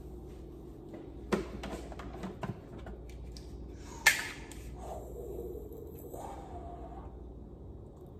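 Ruger-57 pistol being handled and checked unloaded: a few sharp metallic clicks of its action, the loudest about four seconds in.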